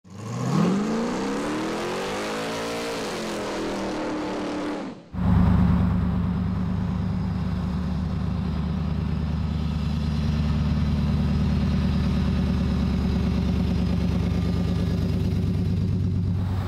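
An engine revving, rising in pitch and falling back over the first five seconds. After a brief break, the LT1 V8 of a 1955 Chevrolet pickup runs steadily and low-pitched as the truck drives slowly closer.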